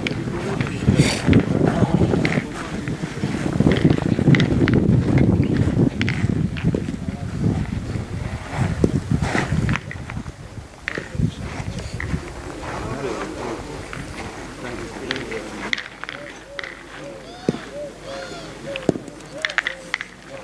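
Indistinct voices talking, louder in the first half and quieter after about halfway, with a few short, sharp knocks scattered through.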